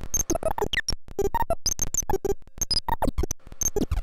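Homemade CMOS synthesizer built around a CD4023 pulse-width-modulated oscillator, with switched capacitors and a pseudo-random voltage varying its feedback resistance, putting out a fast, irregular stream of short electronic blips and clicks that jump from pitch to pitch.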